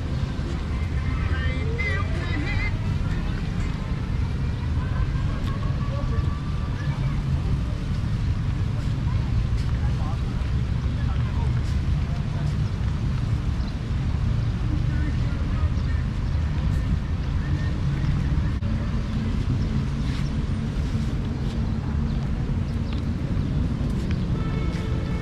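Wind buffeting the microphone: a steady low rumble with no breaks. Faint distant voices can be heard in the first few seconds.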